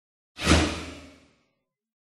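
A single whoosh sound effect for a logo reveal, starting suddenly with a deep low end and fading away over about a second.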